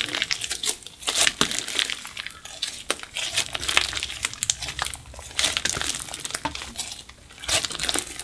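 Glossy slime made from clear slime mixed with makeup, stretched, folded and squeezed by hand, giving a run of irregular sticky crackles and small pops.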